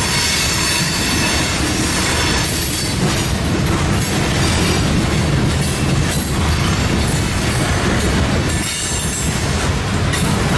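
Freight train tank cars and boxcars rolling past close by on a sharp curve: a steady rumble of steel wheels on rail, with a high squeal from the wheel flanges grinding on the curve.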